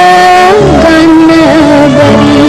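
A woman's singing voice holds a long note, then slides down to a lower held note about half a second in, over instrumental accompaniment in a 1950s film song.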